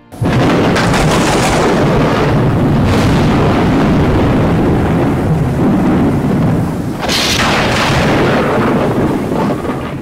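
Loud thunderstorm: continuous heavy rumbling thunder that starts suddenly, with sharper thunder cracks about a second in, near three seconds and a louder one around seven seconds.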